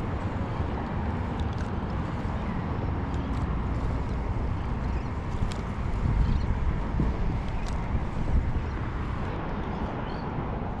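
Steady wind buffeting the microphone, a low uneven rumble with a few faint ticks.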